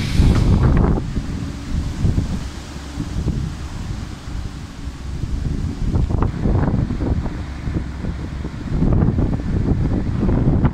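Wind buffeting a phone microphone in gusts, a heavy low rumble that rises and falls and is strongest near the start and again near the end. A music track cuts out within the first second.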